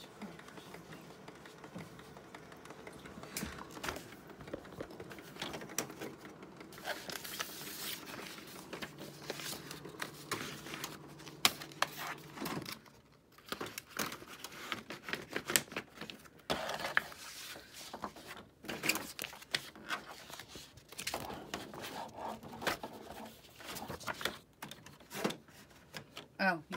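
A Canon PIXMA G3270 inkjet printer's internal mechanism hums steadily, then stops abruptly about halfway through. Throughout, sheets of paper rustle and the printer's plastic parts click and knock as the rear paper-feed slot is opened.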